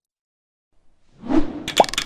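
Intro sound effects for an animated logo. Silent for the first second, then a soft whoosh swells in, and a quick upward-gliding plop comes about a second and a half in, with a fast rattling buzz starting near the end.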